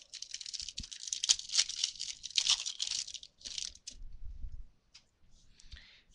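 A foil trading-card pack wrapper being torn open and crinkled, a dense crackling that lasts about three and a half seconds. Quieter rustling and handling of the cards follow.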